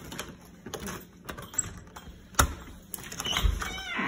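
A few scattered clicks and knocks, the loudest a little past halfway, with a brief squeaky, wavering sound just before the end.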